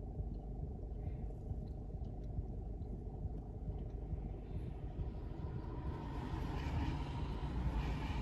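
Steady low rumble of a stationary car idling, heard from inside the cabin. Over the last few seconds the hiss of an oncoming car's tyres on the wet road grows louder as it approaches.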